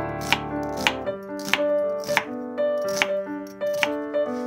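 Chef's knife slicing through an onion half onto a wooden cutting board: six evenly spaced cuts, each ending in a sharp knock on the board. Piano music plays underneath.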